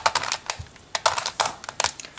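Plastic Pyraminx Crystal twisty puzzle clicking as its faces are turned by hand: a series of sharp clicks, several in quick succession, then a few more spaced out.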